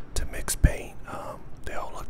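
A man whispering close to a small handheld microphone, with a few sharp clicks and one sudden thump about two-thirds of a second in.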